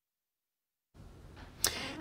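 Complete silence for about the first second at a break in the broadcast, then faint studio room noise fades in, with one brief click about one and a half seconds in.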